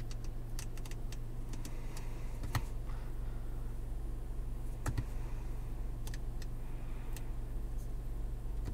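Steady low hum inside the cabin of an idling 2021 Mazda CX-5 with the 2.5-litre turbo, with scattered light clicks from the infotainment control knob and buttons being worked; the loudest clicks come about two and a half and five seconds in.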